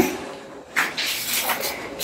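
Sheets of paper rustling as pages are turned over and lifted, loudest about a second in.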